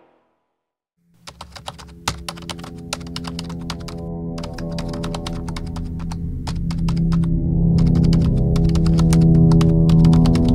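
Keyboard-typing sound effect: a fast, continuous patter of key clicks that starts about a second in, after a moment of silence. Under it, a held music drone grows steadily louder.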